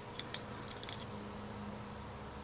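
A few faint clicks and taps of a clear acrylic stamp block being handled: two small clicks near the start and a few lighter ones just before a second in, then only quiet room tone.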